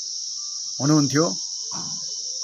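Insects droning in a steady, continuous high-pitched chorus, with a man's voice briefly heard about a second in.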